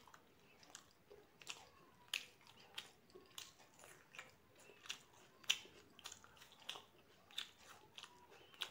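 Close-miked chewing of puri with chole masala: faint, irregular wet mouth clicks, about one or two a second, the loudest about five and a half seconds in.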